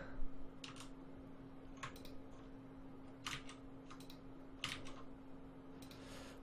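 Faint, scattered clicks of a computer keyboard and mouse, mostly in quick pairs a second or so apart, over a faint steady hum.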